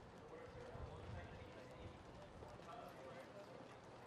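Faint ambience of horses' hooves clopping on a dirt track, with distant voices.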